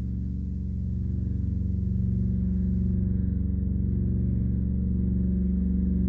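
Microtonal ambient drone music: a low, steady cluster of sustained tones that slowly swells louder, with no beat.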